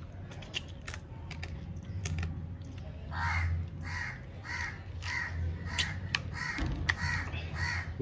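A crow cawing: a run of evenly spaced calls, about two a second, starting about three seconds in. Before it there are a few faint clicks.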